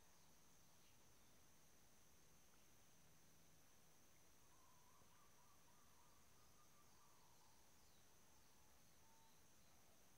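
Near silence: faint room tone with a thin, steady high-pitched tone.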